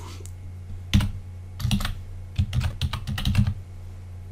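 Computer keyboard being typed on: a single keystroke about a second in, then a quick run of keystrokes, over a steady low hum.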